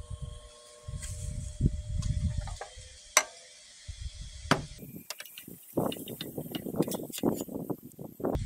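Handling noise: scattered knocks and one sharp click about three seconds in, over irregular bursts of low rumble.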